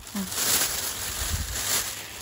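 Black plastic bin bag rustling and crinkling as hands work inside it, putting a handful of freshly picked mushrooms in with the rest.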